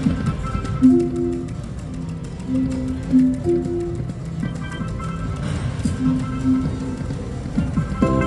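Neptune Power Link video slot machine playing its reel-spin sounds: a string of short, held electronic notes over a steady background hubbub with small clicks.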